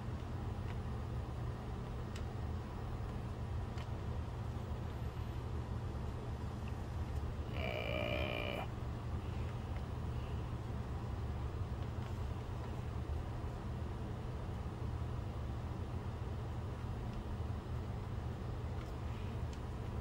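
Digital Projection dVision 30 XL DLP projector running with its cover off: a steady hum and whoosh of the cooling fans, with its color wheels spinning inside. A few faint clicks come in the first four seconds, and a brief, about one-second sound with a higher tonal edge comes near the middle.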